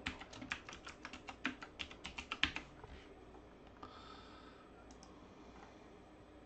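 Typing on a computer keyboard: a quick run of about twenty keystrokes for roughly two and a half seconds, then it stops.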